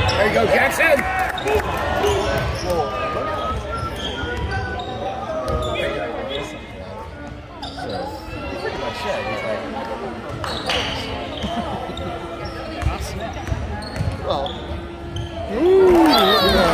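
A basketball bouncing on a hardwood gym court during play, over the talk of spectators in the stands, in a large gym.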